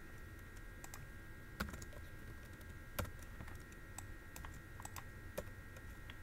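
Faint scattered clicks of computer keyboard typing and mouse clicking, with two slightly louder clicks about one and a half and three seconds in, over a faint steady electrical whine.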